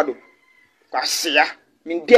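A single short drawn-out vocal cry about a second in, lasting about half a second with a hissy onset and a downward-bending pitch, between brief silences.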